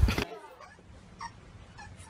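A sandhill crane's loud call, cut off abruptly a quarter second in, followed by low background sound with a few faint short noises.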